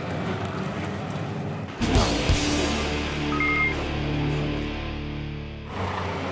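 Background music added in the edit: about two seconds in, a heavy low hit opens a music sting of held chords, which cuts off shortly before the end. Race-track noise from the stock cars is under it.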